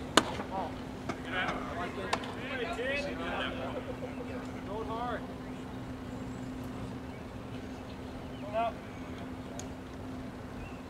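A baseball pitch smacking into the catcher's mitt with one sharp pop just after the start, then voices of players and spectators calling out for a few seconds and once more near the end, over a steady low hum.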